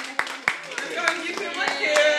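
Hand clapping at a steady beat, about three claps a second, with voices over it.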